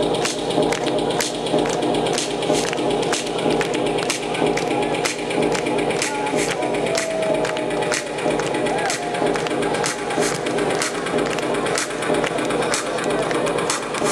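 Electronic dance music with a steady beat playing over a large arena sound system, heard from among the audience.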